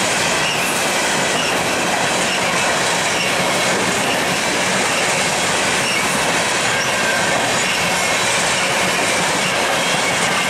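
Empty coal hopper cars of a CSX freight train rolling past: a steady, loud noise of steel wheels on rail, with faint thin high-pitched tones from the wheels.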